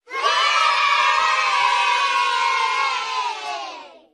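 A group of children cheering and shouting together. It starts abruptly and fades away over the last second.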